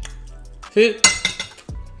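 Metal knife and fork scraping and clinking against a ceramic plate while cutting a waffle, with one sharp clink about a second in.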